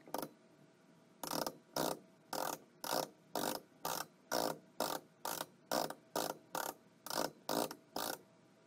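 Hand screwdriver driving a screw into a metal door-latch faceplate: a short clicking rasp repeated about twice a second, one per turn of the driver, starting about a second in.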